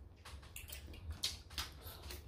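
Faint eating sounds: a few scattered soft clicks and smacks of chewing and biting into corn on the cob.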